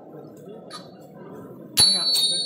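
Indistinct chatter of a crowd of voices. Near the end a small metal bell is struck once, sharply, and rings on in a high, clear, steady tone.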